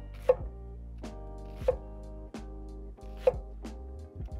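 Japanese kitchen knife chopping down through an onion onto a cutting board, cutting across the earlier slices to dice it. There are about six sharp strikes at a steady pace, over steady background music.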